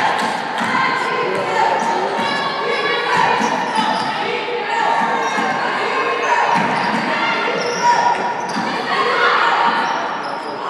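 A basketball being dribbled on a wooden gym floor during live play, with voices calling across a large, echoing gym.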